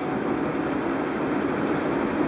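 Steady hiss of air conditioning as room noise, with a faint, brief high-pitched tick about a second in.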